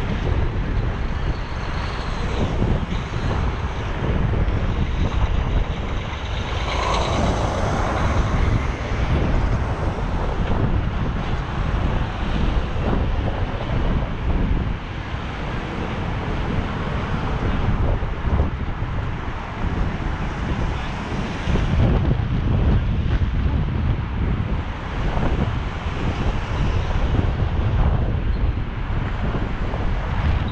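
Wind buffeting the microphone of a camera on a moving bicycle: a steady, gusting low rumble, with city traffic going by underneath.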